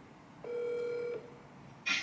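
Smartphone ringing tone for an outgoing call: one steady electronic tone starts about half a second in and lasts under a second. A voice starts abruptly near the end.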